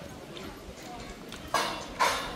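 Faint outdoor background with distant voices, then a sudden loud burst of hissing noise about three quarters of the way in that fades slowly.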